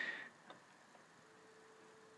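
Near silence: room tone, with a short soft rustle at the start and one faint click about half a second in.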